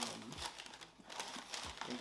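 Crinkling and rustling of paper and a cardboard sneaker box being handled, in short irregular bursts.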